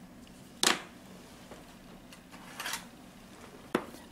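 Handling noise from nail-art work: two sharp clicks about three seconds apart, the first the loudest, with a soft brief rustle between them as fingers and small tools touch the plastic practice nail tip and the work surface.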